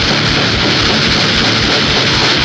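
Loud thrash metal recording: a dense wall of distorted guitars over a fast, even drum pulse of about eight to nine beats a second.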